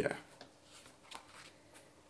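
Three faint, short rustles of paper as a hand brushes over and takes hold of the pages of a large softcover art book.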